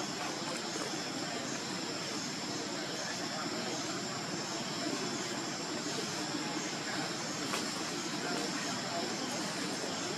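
Steady outdoor ambience: a continuous even rush with a thin, high, steady insect drone over it.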